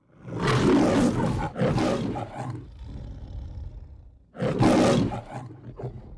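A big cat roaring: two long roars back to back, then a quieter trailing rumble. A third roar comes about four and a half seconds in, followed by a few shorter calls.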